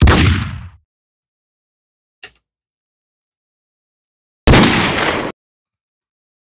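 Pistol gunshot sound-effect samples auditioned from a sample library: two single shots about four and a half seconds apart, each cut off abruptly after under a second of decay. A faint short click falls between them.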